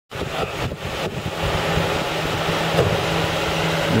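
Steady low hum of an idling car engine under a haze of wind noise on the microphone, cutting in suddenly right at the start.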